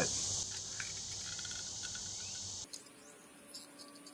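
A steady, high-pitched outdoor insect chorus with a few faint clicks in the first second; it cuts out abruptly almost three seconds in.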